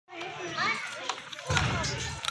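Faint background voices, children's among them, with a low rumbling noise coming in at about a second and a half.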